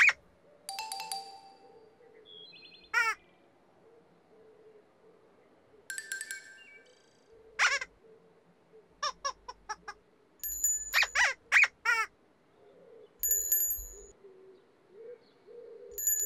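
Children's-TV sound effects: bright chime-like tinkles alternating with short squeaky, pitch-sliding vocal noises, a few at a time with near-quiet gaps between.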